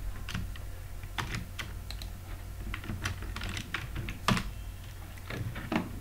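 Typing on a computer keyboard: irregular keystroke clicks, one a little louder about four seconds in, over a low steady hum.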